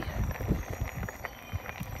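Low wind rumble on the microphone with faint crunching and small clicks from rolling over a gravel track, fading a little midway.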